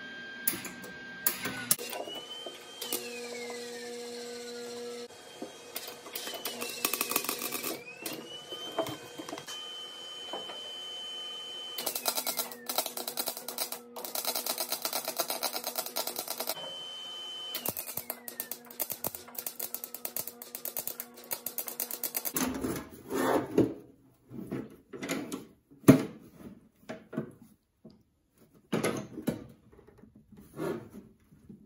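Wire-feed (MIG) welder laying short beads on thin steel: several runs of arc crackle a few seconds long, each carrying a high whine that falls away in pitch after the run stops. In the last several seconds welding stops and there are scattered knocks and clatter of the steel can being handled.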